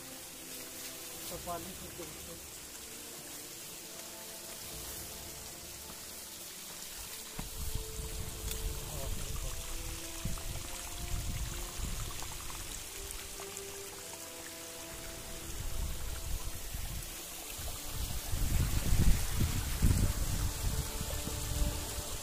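Steady rush of falling water from a monsoon waterfall, with a melody of held notes over it. Low rumbling comes and goes from about a third of the way in and is loudest near the end.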